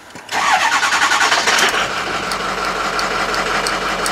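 2006 Ford F-550 truck engine cranking on the starter for about a second and a half, then catching and settling into a steady idle.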